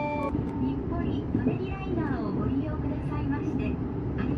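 Steady low rumble of a moving vehicle heard from on board, with faint indistinct voices over it. A short chiming outro tune cuts off just after the start.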